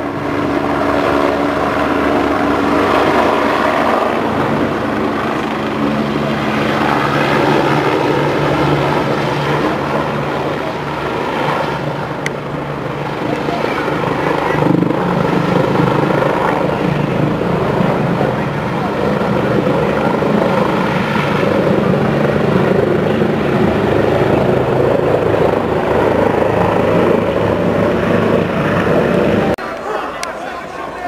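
Helicopter hovering low overhead, its rotor and engine running steadily, with voices underneath; the sound cuts off just before the end.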